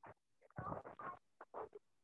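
Faint, broken scraps of background noise coming through a participant's unmuted microphone on a video call, in about four short bursts with near silence between them.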